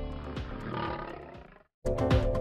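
A lion gives one rough call that fades away over about a second and a half. It then cuts off to silence shortly before the music comes back in.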